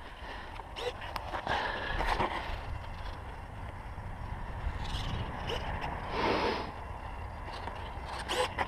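Wind rumbling on the microphone, with scattered light knocks and rustles from a foam RC plane being handled, and a short swell of rustling about six seconds in.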